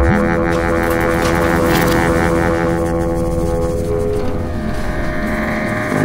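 Electronic sound-design drone: layered held tones over a rumbling low texture, changing about four seconds in as the upper tones fade and a hissing layer comes in.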